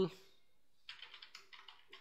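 Computer keyboard typing: a quick run of light keystrokes starting about a second in.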